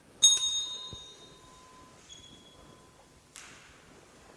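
A small metal bell struck once, sharply and loudly, ringing with several high tones that die away over about a second and a half, followed by a fainter ding about two seconds in. A short scuffing noise comes near the end.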